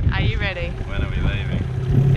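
Voices talking over the low running of an inflatable tender's outboard motor and wind buffeting the microphone.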